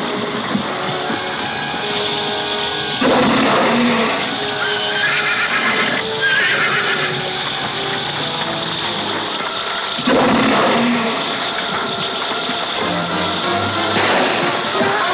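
Dramatic orchestral film score, with loud sudden chords about three seconds and ten seconds in, over horses whinnying.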